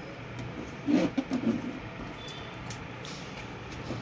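Plastic PVC cards being handled and slid across the printer's plastic top, with a few light clicks and a short cluster of handling noise about a second in, over a faint steady low hum.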